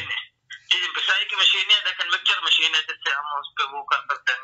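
Speech over a telephone line: a caller's voice, thin and narrow-band, talking in short phrases.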